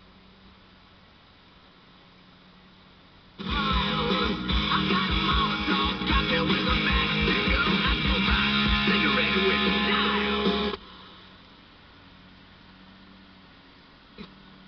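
Guitar music from an old Automatic Radio FM converter/8-track unit's radio, playing through the car speakers. It comes in abruptly about three and a half seconds in and cuts off just as suddenly about eleven seconds in, as a station is tuned. A low steady hum lies under it before and after.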